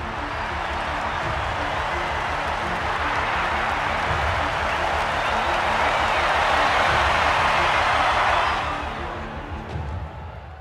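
A stadium crowd cheering a touchdown run, growing louder to a peak about seven or eight seconds in and then fading near the end, over background music with a steady beat.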